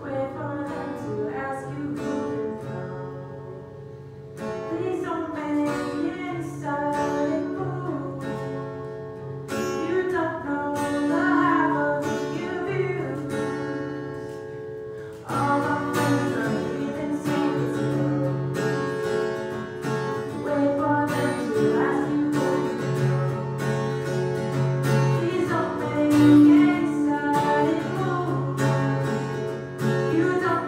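A woman singing to her own strummed acoustic guitar. The playing steps up and gets louder about halfway through.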